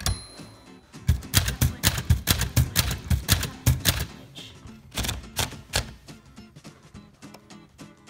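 Keys of a 1946 Smith Corona Silent manual typewriter. There is a single click with a short high ring at the start, then a fast run of keystrokes typing a short test line, and a few more strikes about five seconds in.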